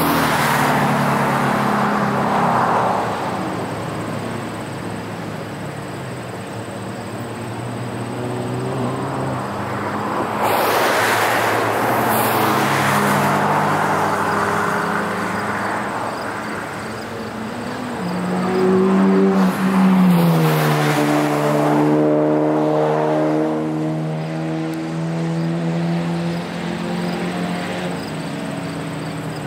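Cars lapping a road course, their engines running hard and passing by in turn, the engine notes rising and falling as they accelerate and lift. The loudest moment comes about two-thirds of the way through, where one engine's pitch climbs and then drops sharply.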